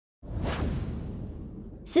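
A whoosh transition sound effect for an animated intro wipe, swelling up just after the start and fading away over about a second and a half. A woman's narrating voice begins at the very end.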